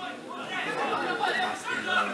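Indistinct chatter of several people talking at once, with no single clear voice.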